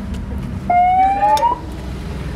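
Low, steady rumble of roadside traffic and idling engines. A little under a second in, a single loud tone rises in pitch for nearly a second before cutting off.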